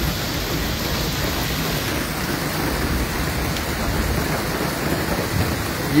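Heavy rain falling steadily on a flooded street and standing water, an even, unbroken hiss.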